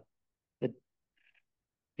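A pause in a man's speech, near silent apart from one short spoken word, 'the', just over half a second in, and a faint brief high sound about a second later.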